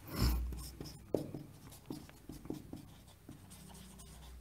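Marker pen writing on a whiteboard: a few short, faint strokes with pauses between them, after a soft thump at the start.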